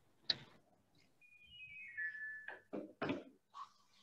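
Video-call audio: a sharp click, then a short falling run of electronic beeps like a call app's notification chime, followed by a few brief broken bursts of sound from a poor connection.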